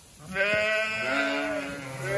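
A sheep bleating: one long bleat starting about a third of a second in and lasting about a second and a half.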